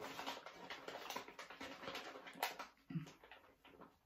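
Chewing a bite of hot chili pepper pod: soft, irregular mouth clicks and smacks, with a brief low hum about three seconds in. She is chewing the bitter pod further to get past the bitterness that came after the second bite.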